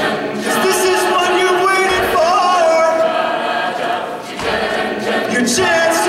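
Mixed-voice a cappella group singing sustained chords, with no instruments. The voices dip briefly a little past four seconds in, then swell again.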